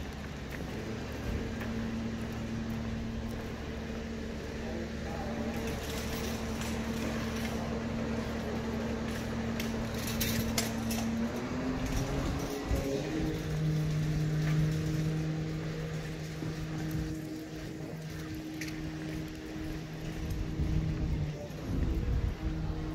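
Street noise with a steady engine hum from a nearby vehicle; about halfway through the hum rises in pitch and then holds at the higher note. Light clicks and clatter come through before the rise.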